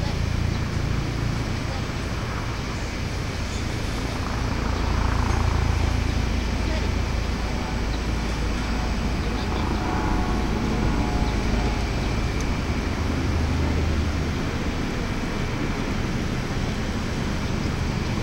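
Steady outdoor city ambience: a low rumble of distant traffic and air movement, with faint distant voices a few seconds in and again around the middle.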